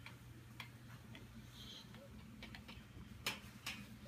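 Faint, irregularly spaced clicks and ticks over a low, steady hum; one click about three seconds in stands out.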